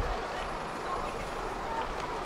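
Busy city street: a steady rumble of road traffic with faint voices of passers-by.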